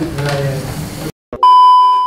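Talk is cut off abruptly, and after a moment of silence a loud, steady, high-pitched beep sounds: the test tone that goes with a colour-bars screen, used here as a glitch edit transition.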